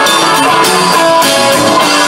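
Live rock band playing loudly, with a guitar carrying held, sustaining notes over a steady beat in an instrumental passage.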